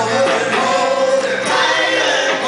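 Live rock band playing with a man singing the lead vocal into a microphone.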